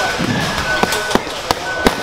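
Boxing gloves smacking into focus mitts: four sharp punches in quick succession, a one-two to the face and a one-two to the body, in the second half.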